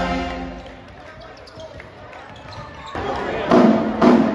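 A marching band's brass chord dies away, followed by a short lull with crowd chatter echoing in a gym. Near the end the drumline strikes up with loud, sharp hits as the next tune begins.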